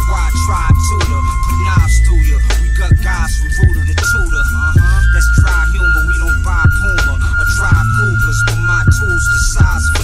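Lo-fi boom-bap hip-hop beat: heavy bass and regular drum hits under a sustained high melodic note that steps to a new pitch every second or two.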